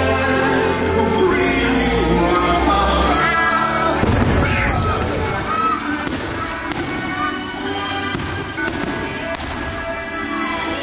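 Fireworks show music, with a deep rumble under it for the first three seconds and a firework boom about four seconds in.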